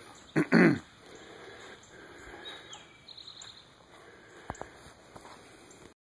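A person clearing their throat in two short rasps about half a second in. Two faint sharp clicks follow about four and a half seconds in.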